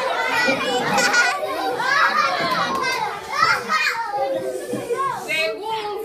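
Many young voices talking and calling out at once, a crowd of school pupils chattering without a break.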